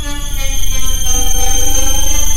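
Computer-generated Csound noise music: several held electronic tones, some slowly shifting in pitch, over a fast-pulsing low drone.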